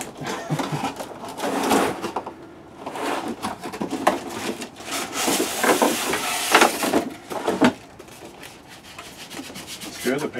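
A solar panel being slid out of its cardboard box and its styrofoam packing pieces pulled off: cardboard and foam rubbing and scraping in several spells, quieter near the end.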